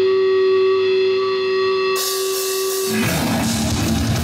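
Live death metal band: one electric guitar note held and ringing on its own, then cymbals come in about two seconds in, and the full band of drums and heavy distorted guitars crashes in about a second later.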